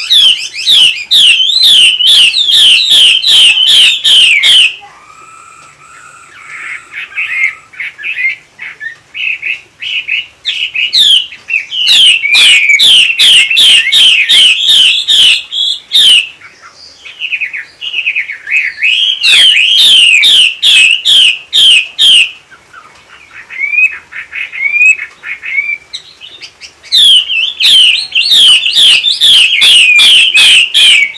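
Caged female Chinese hwamei giving loud bursts of rapid, repeated rising notes, each burst lasting several seconds. Four such bursts come with softer, scattered calls between them. This is the female's 'te' calling, which keepers use to fire up male hwamei to sing.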